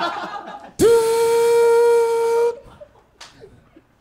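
A man's voice imitating a Polaroid camera taking a photo: one steady, high, buzzing hum held for about a second and a half, swooping up at its start.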